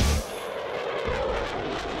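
Logo sting sound effect: a rushing noise with a low rumble coming in about a second in, slowly fading.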